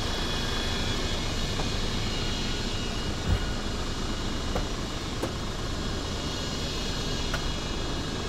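Hino 500 truck's diesel engine idling steadily, with one low thump about three seconds in.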